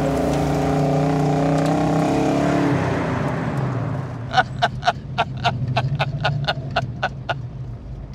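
The 426 Hemi V8 of a 1970 Dodge Challenger R/T running at steady revs, dropping away to a low hum about three seconds in. Near the end comes a quick, even run of about a dozen sharp taps, about four a second.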